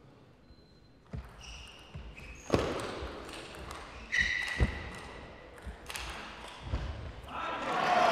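Table tennis ball being served and then struck back and forth in a rally, sharp clicks of the celluloid ball on rubber bats and the table about once a second. A voice comes in loudly near the end.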